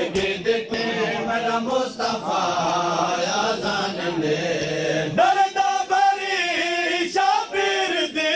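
Men's voices chanting a noha, a Shia Muharram lament, in unison, with the slaps of matam, hands beating on chests, mixed in. About five seconds in, a higher, stronger voice leads the chant.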